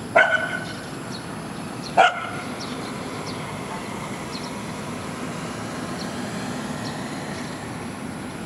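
A dog barking twice, about two seconds apart, the first bark trailing off briefly.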